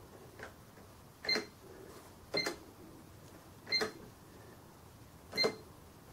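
Keys on a Sam4S NR-510R cash register's raised keyboard pressed four times at uneven gaps of one to one and a half seconds, each press a sharp click with a short electronic beep, after one faint click at the start.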